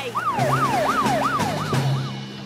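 Cartoon police-boat siren: a wailing tone that jumps up and glides down about three times a second, with a steady low drone beneath it.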